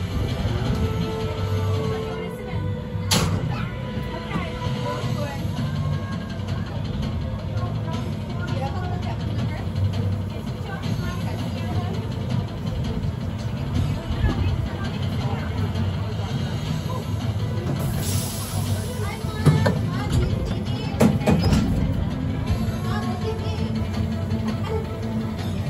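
Amusement-ride ambience: background music with a steady low beat and people talking around the ride, with a sharp click about three seconds in and a brief hiss later on.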